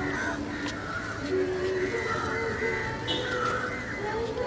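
Crows cawing over the mixed voices of a crowd gathered close by.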